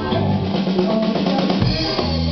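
Live band music in which the bass drops out and the drum kit plays a break of snare and bass-drum strokes, with the full band coming back in at the end.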